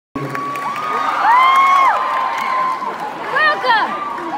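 Concert crowd cheering and screaming, with several long high-pitched sustained screams; the loudest comes about a second and a half in, and shorter wavering shrieks follow near the end.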